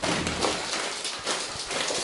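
Plastic shopping bag rustling and crinkling as it is handled, a dense crackle with many small clicks.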